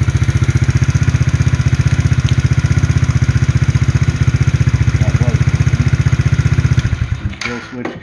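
Tao Tao T-Force 110cc quad's small single-cylinder four-stroke engine idling with an even, rapid beat, running now that the stripped-down ignition wiring gives it spark. About seven seconds in it is cut with the kill switch and dies away.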